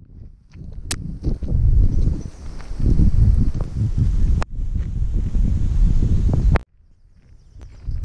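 Low, uneven rumble of wind and handling noise on a hand-held camera's microphone while walking on a trail, with footsteps. It is broken by a few sudden clicks and drops to near quiet for about a second near the end.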